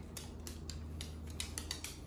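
Cavalier King Charles spaniels' claws clicking on a hardwood floor in quick, irregular taps, over a low steady hum.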